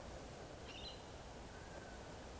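Faint outdoor background with a brief, faint bird chirp a little under a second in.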